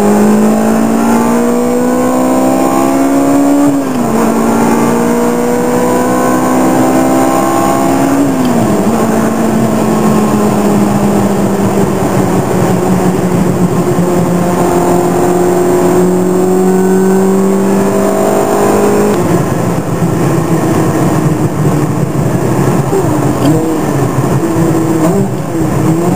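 Ferrari sports car engine heard from inside the cabin, revving up through the gears, with two upshifts about four and eight seconds in. It then holds a steady note while cruising, and near the end the revs rise and fall with the throttle.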